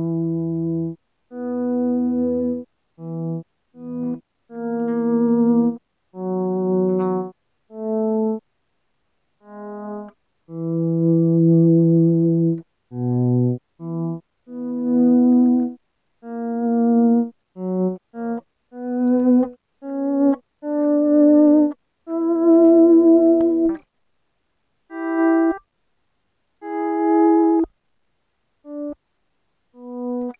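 Electric guitar notes and chords faded in and out with a Dunlop DVP4 Volume X Mini volume pedal, each one rising out of silence and stopping, with silent gaps between them. Many of the swells come in abruptly rather than gradually, so the pedal sounds as if it just turns on and off, which the player puts down to the mini pedal's taper.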